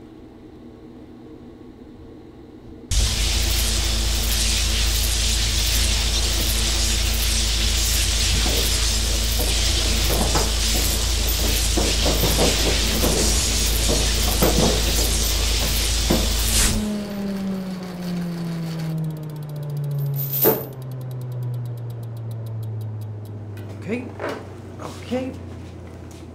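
Film soundtrack: after about three seconds of quiet, a loud music cue thick with crackling noise starts suddenly. It cuts off abruptly about two-thirds of the way in, leaving a low hum that glides down in pitch like a machine powering down, with one sharp click partway through.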